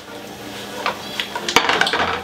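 Cut button mushrooms sizzling in hot olive oil in a frying pan as they are tossed, a steady hiss with a few light scrapes. About a second and a half in, the pan is set down on the gas burner's grate with a sharp knock.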